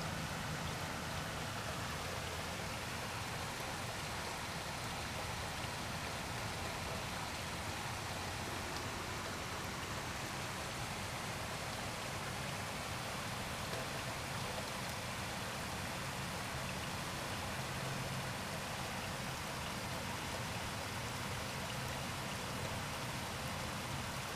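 Steady rain falling, an even patter with no breaks.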